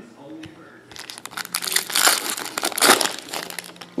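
Foil trading-card pack wrapper crinkling as it is opened and handled, a dense crackle starting about a second in and dying away shortly before the end.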